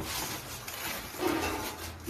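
Rustling and scraping of packaging being handled by hand as a box of plants is unpacked.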